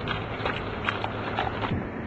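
Faint footsteps of a man jogging, over the steady low hum of a vehicle's engine.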